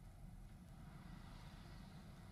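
Near silence: only a faint, low rumble of outdoor background noise.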